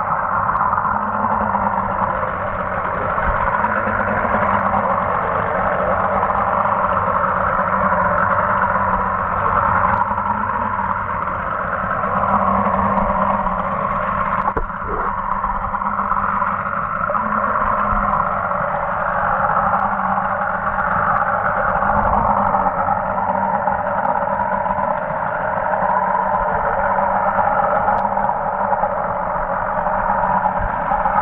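Steady motor drone heard underwater, muffled through the camera's housing, with a low hum beneath it and a brief knock about fifteen seconds in.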